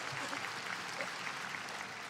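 Large audience applauding steadily, many hands clapping at once.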